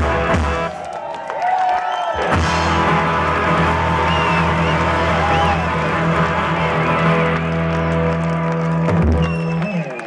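Live rock band playing loud on bass, guitars and drums; about two seconds in the band settles into one long held chord, with wavering higher tones over it, and a low hit near the end.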